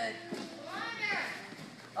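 A child's voice making one call that rises and then falls in pitch, peaking about a second in, over children's chatter.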